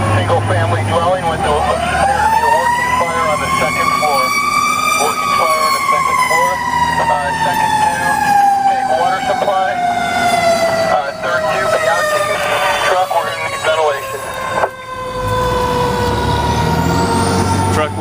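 Fire truck siren winding up over about four seconds, then slowly winding down for the rest of the time, with rapid short chirps heard over it.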